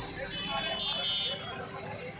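Overlapping voices of a crowd milling around, with street traffic noise underneath.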